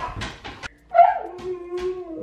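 Siberian Husky giving one whining call about a second in, dropping in pitch and then held steady for about a second.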